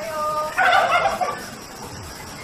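Domestic turkey gobbling: a short steady note, then a rapid warbling gobble starting about half a second in and lasting under a second.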